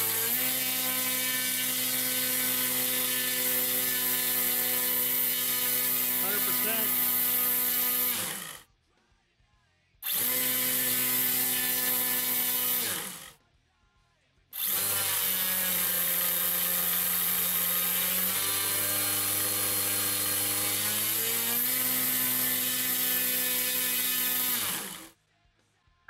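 A DualSky XM4010 brushless outrunner motor spinning an 11-inch propeller at high throttle, giving a steady whine rich in overtones. Its pitch steps up in stages as the throttle is pushed toward full, in a bench test drawing around 11 to 16 amps. The sound breaks off abruptly twice for a second or so and again near the end.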